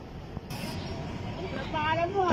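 Steady low rumble of construction-site and street traffic, with a short hiss about half a second in.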